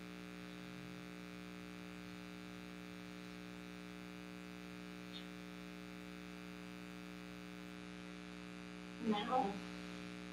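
Steady electrical hum made of several even, unchanging tones, like mains hum picked up in the recording. About nine seconds in, a brief vocal sound rises above it.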